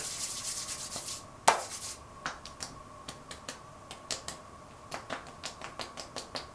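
Hands rubbing skin product between the palms in two short strokes, then a run of light, irregular pats as the palms and fingers are pressed onto the face.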